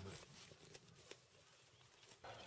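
Near silence: the echo of a rifle shot fading away in the first moment, followed by a few faint clicks.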